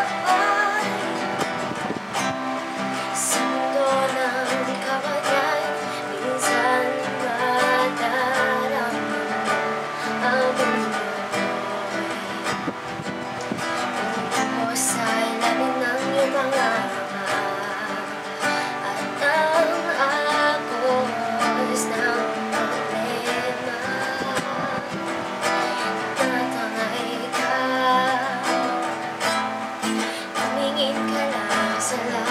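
A woman singing while strumming an acoustic guitar.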